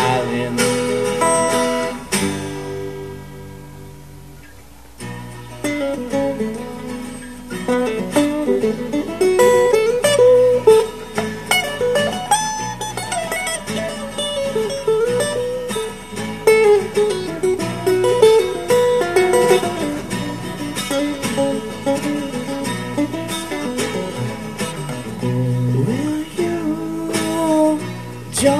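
Two acoustic guitars playing live. About two seconds in, a chord is left to ring and fades for a few seconds. Then a lead acoustic guitar plays a bending melody over strummed rhythm guitar.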